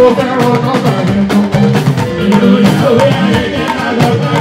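Live fuji band music: talking drums and other percussion with electric guitar and bass, and a man singing lead into a microphone.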